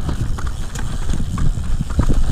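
Mountain bike rolling fast down a rocky dirt trail: a steady low tyre rumble with a quick, uneven run of knocks and rattles as the wheels hit stones and roots.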